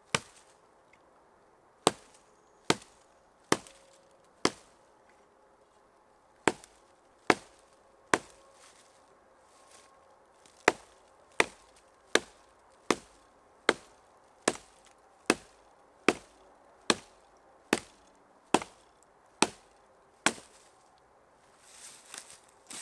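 Hatchet chopping into a fallen dead branch: about twenty sharp strikes at a steady pace of roughly one every 0.8 seconds, with two short pauses in the first half.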